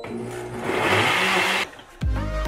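Countertop blender motor running as it chops chunks of banana and fruit for a smoothie. It grows louder about half a second in, then cuts off suddenly about a second and a half in.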